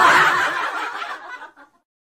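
Breathy, snickering human laughter: one burst, loudest at first, fading out within about a second and a half.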